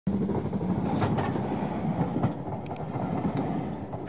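A passing train: a steady rumble with a low hum under it and a few sharp clicks.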